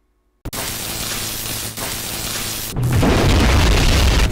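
Intro sound effects: a sudden hit about half a second in, then a steady full-range hiss of noise. A brief drop just before three seconds leads into a louder, deeper booming rumble that runs into the start of hip hop intro music.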